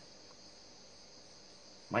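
Faint, steady high-pitched chirring of crickets in the background, with a man's voice coming in near the end.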